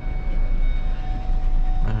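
Car running and turning at low speed, heard from inside the cabin: a steady low rumble of engine and road noise with a faint steady whine over it.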